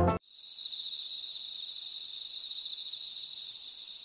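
Steady, high-pitched trilling of a cricket-like insect, with a fine even pulse. It starts abruptly as the music cuts off right at the beginning.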